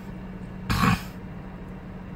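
A man clearing his throat once, a short rough burst about a second in.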